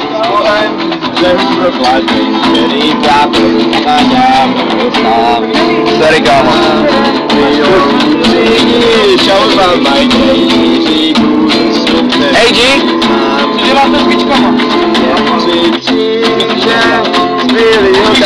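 Acoustic guitar strummed steadily, with voices singing or calling over it.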